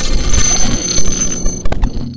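Loud electronic outro sting for a logo reveal: a deep bass layer under high, steady ringing tones, breaking into a few sharp glitchy clicks near the end.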